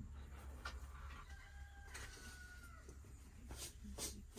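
A rooster crowing faintly, one drawn-out call starting about a second in and tailing off slightly in pitch, over a steady low hum.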